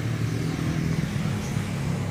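A motor vehicle engine running steadily, a low even hum.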